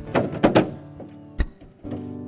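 Malambo zapateo: a rapid flurry of boot heel-and-toe strikes on the stage floor, then one hard single stamp about a second and a half in. Strummed acoustic guitar chords accompany the footwork.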